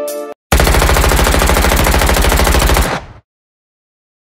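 Rapid automatic gunfire, likely an intro sound effect: one long burst of fast, evenly spaced shots that stops suddenly about three seconds in. Just before it, the tail of a hip-hop beat cuts off.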